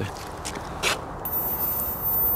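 Rustling and scraping of a jacket against the camera microphone as the camera is jostled, with a short hiss about a second in.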